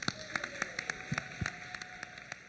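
Sparse, irregular hand claps from an audience, several a second, over a faint background hiss.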